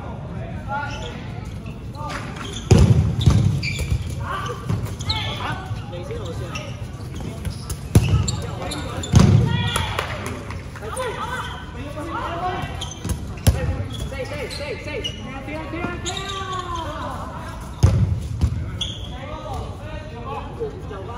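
Dodgeballs smacking off players and the floor of an indoor gym, about five loud hits spread through, with players shouting and calling out between them.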